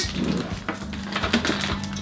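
Background music with a few light metallic clicks and clinks from scissors and charm bracelets being handled.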